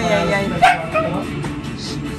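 A dog barking and yipping: a drawn-out whining yelp followed by a short sharp bark, over music from a television.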